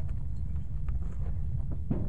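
Steady low rumble of wind buffeting the microphone, with a few faint knocks and scuffs as a small rubber transport tire is handled.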